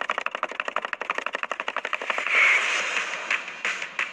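A fast run of sharp clicks, about fifteen a second, then a louder rushing noise about two seconds in: an edited trailer sound effect over a cut.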